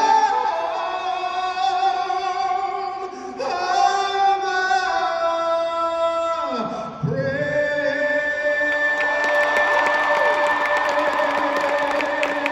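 A solo singer echoing through a large arena, holding long notes with vibrato. The final note is held for several seconds, and the crowd starts cheering under it near the end.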